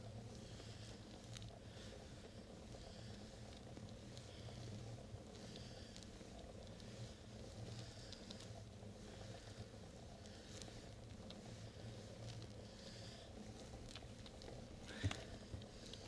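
Faint, steady rolling noise of a bicycle moving over a paved road, with a low hum underneath and a single knock near the end.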